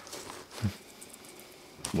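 Faint rustling and a few light clicks from the nylon fabric and plastic clamps of a solar backpack being handled, with a brief low murmur under a second in.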